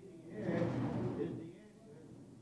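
A man's voice speaking a short phrase beginning about half a second in and trailing off past the middle, with lower background sound before and after.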